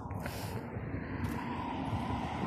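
A motor vehicle passing on the road: a steady low rumble of engine and tyres that grows slightly louder.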